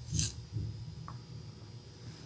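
Quiet room tone with a steady low hum, broken by one brief soft hiss just after the start and a tiny tick about a second in.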